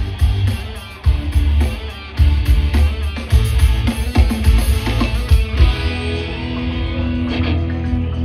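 Loud rock song played through a concert PA, with electric guitar, bass and drums keeping a heavy beat. Sustained notes build up from about six seconds in.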